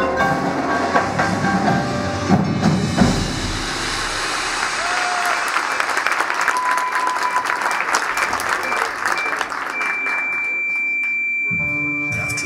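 Indoor drumline and front-ensemble show music. Marimba and mallet-keyboard notes play over low bass for the first few seconds, then a dense high rattle of percussion runs for several seconds, and a long, steady high synthesizer tone is held near the end.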